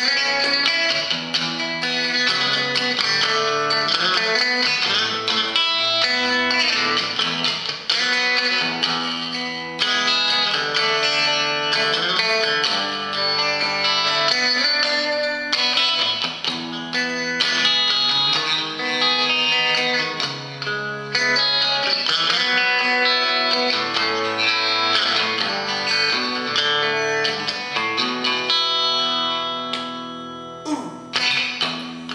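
Telecaster-style electric guitar played through a small Fender combo amp, an instrumental passage of sustained chords and melody notes changing every second or two, with no singing.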